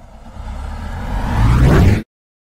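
Intro title sound effect: a whoosh with a deep rumble that swells steadily louder and cuts off suddenly at its peak.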